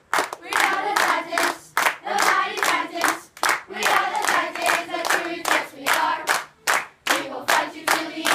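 A group of children and adults singing a team song together while clapping their hands in a steady rhythm, with short breaks between phrases.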